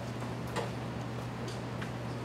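A pause between words: steady low electrical hum of the room and sound system, with a few faint, short ticks.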